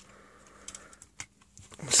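A few light clicks and taps of hard plastic toy parts being handled, as a small Minicon figure is unpegged from a Transformers tank toy.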